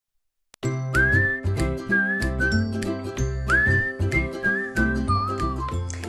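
Theme music for a TV programme opening: a whistled melody that slides up into its long notes, over chords, a bass line and light percussion, starting about half a second in.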